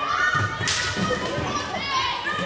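Young players' shouts and calls ringing through a sports hall during floorball play, with a single sharp crack about two thirds of a second in and thuds of feet on the court floor.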